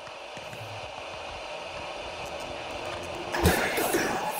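Static-like electronic noise hissing steadily and slowly growing louder, then breaking into louder glitchy crackles and clicks near the end.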